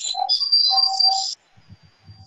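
High-pitched audio feedback squeal in a video call, from two devices picking up each other's sound. It is a steady piercing whine with a lower tone under it that cuts off suddenly about a second and a half in.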